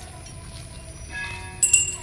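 A metal bell rung in strokes: a quieter stretch of fading ringing, then a quick cluster of two or three clangs near the end, each ringing on at several high pitches.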